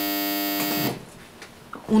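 Electric door buzzer ringing: a steady, harsh buzz that cuts off abruptly just under a second in, someone at the practice's entrance asking to be let in.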